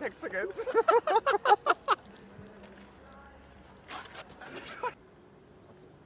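A man's voice in a fast run of loud, strongly pitched syllables for about two seconds, then a shorter burst of voice about four seconds in.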